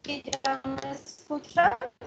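A voice coming through a video call in choppy, broken fragments, cutting in and out as the connection drops out.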